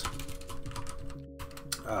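Typing on a computer keyboard: a quick run of key clicks, broken by a short pause about a second in.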